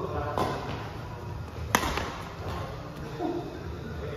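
Badminton racket hitting a shuttlecock with a sharp crack a little under two seconds in, after a softer hit near the start.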